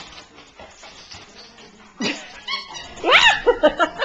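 A dog whining and yipping in short high pitched calls about three seconds in, after a single knock about two seconds in.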